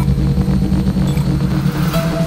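Electronic intro music dominated by a loud, steady low bass rumble, with faint high tones over it.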